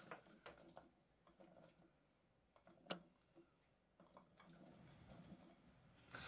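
Near silence with a few faint light clicks and taps, one more distinct about halfway through, as kohlrabi pieces are added by hand into a Thermomix's stainless steel mixing bowl.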